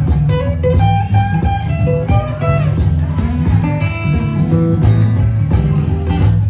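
Cole Clark acoustic guitar played solo: quick picked lead lines with bent notes that slide up in pitch, over ringing low bass notes.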